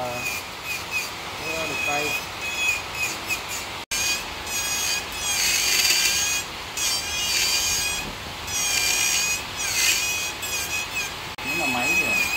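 Handheld electric rotary carving tool running with a steady high-pitched whine. Several times it gives louder rasping stretches as its bit cuts into the wood.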